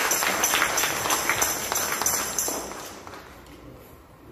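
A congregation clapping, with a tambourine jingling in time, dying away over the last second or so.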